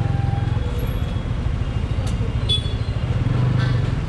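Motorcycle engine running at a low, steady idle while the bike creeps along a fuel queue, with faint short beeps and clicks from the petrol station around it.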